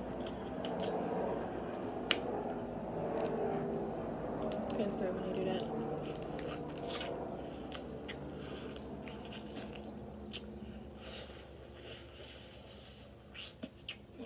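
Close-up eating of steamed crab legs: scattered sharp clicks and cracks of the shell, with wet sucking and chewing as the meat is pulled out with the mouth.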